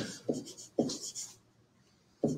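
Pen stylus writing on a tablet screen: three short scratching strokes in the first second and a half.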